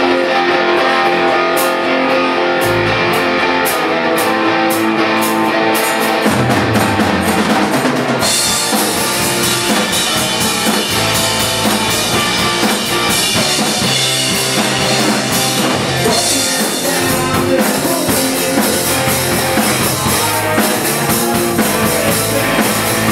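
Live punk rock band playing in a small room: electric guitar opens the song, and about eight seconds in the full band with bass and drum kit and cymbals comes in.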